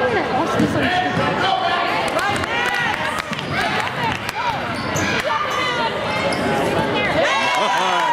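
Basketball being dribbled on a hardwood gym floor during a fast break, with a run of short high squeaks and voices echoing in the hall.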